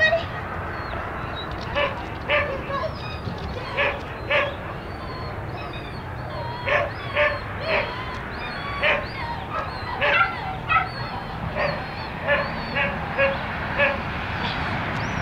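A dog barking over and over in short, high-pitched barks, singly and in quick pairs or triplets, at an uneven pace.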